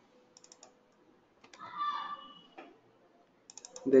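Computer keyboard keys being typed in short bursts: a few keystrokes about half a second in, one around two and a half seconds, and a quick run of keystrokes near the end.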